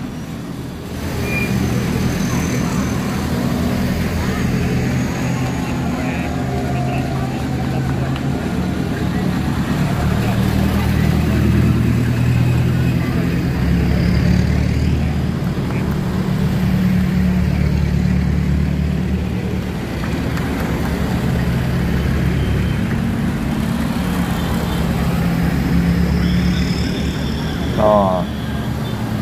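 Engines of modified race pickup trucks running at low speed as the trucks drive slowly past one after another. A steady low engine hum swells and fades as each truck passes.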